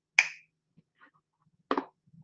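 Two short, sharp finger snaps about a second and a half apart.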